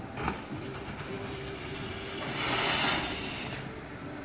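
Ski jumper's skis landing and running down the plastic matting of a summer ski-jump landing slope: a short knock near the start, then a swelling hiss of the skis sliding on the mats that peaks about three seconds in and fades.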